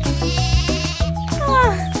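A cartoon lamb bleating, one short 'baa' falling in pitch about a second and a half in, over the instrumental backing of a children's song.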